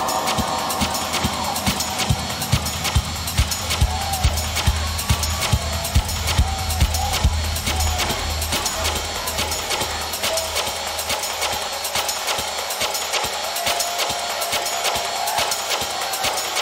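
Lisbon batida-style electronic dance music from a DJ set, played loud over the venue sound system. A fast, busy percussion pattern runs over a deep bass line that swells during the first half.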